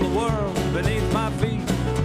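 Live band playing: acoustic guitar strummed over a drum kit and bass, with a melody line that slides up and down in pitch above them.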